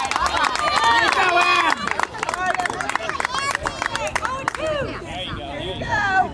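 High-pitched young voices shouting and chanting over one another, with a run of sharp hand claps in the first two seconds: a softball team cheering from the dugout.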